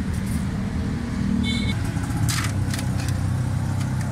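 A motor vehicle engine running steadily with a low rumble. There is a brief high-pitched tone about a second and a half in, and a short hiss just after two seconds.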